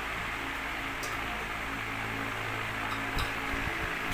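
Steady hiss with a low hum underneath. A steel ladle gives faint clinks against a steel pot about a second in and again near the end.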